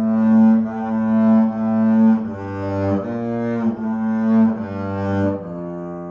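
Double bass played with a bow: a slow melody of sustained notes, each note changing smoothly to the next, ending on one long held note.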